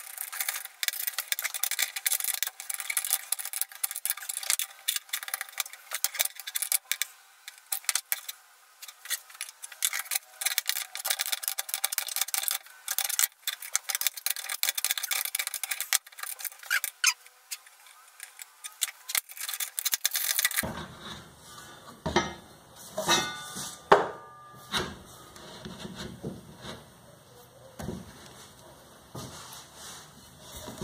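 Rapid metallic clicking and rattling of steel nuts and threaded rods being worked by hand on a steel welding table. About two-thirds of the way through, the sound changes to slower, heavier knocks and scrapes of metal, with a short squeak.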